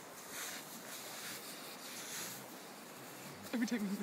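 Golden retriever rolling and rubbing on its back in dry sand, with a few soft rustling scrapes as it squirms.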